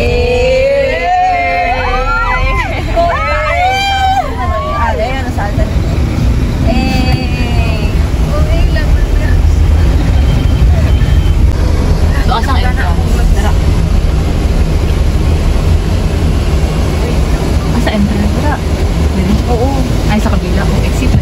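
Steady low road and engine rumble inside a moving car's cabin, with high-pitched voices in the first few seconds and briefly again a little later.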